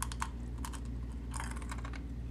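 Mouth sounds of eating a crispy wafer cookie: small clicks and smacks of lips and tongue with a fingertip at the lips, a few scattered clicks and then a quicker run about a second and a half in. A low steady hum runs underneath.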